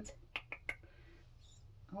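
Light tapping on a rubbery sink strainer full of paint: about four quick clicks in the first second.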